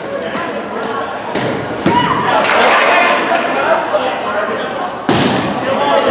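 Volleyball rally in an echoing gym: the ball is struck with sharp slaps, hardest about two seconds in and again near the end, and sneakers give short squeaks on the floor. Players and spectators shout and cheer, swelling after each hit.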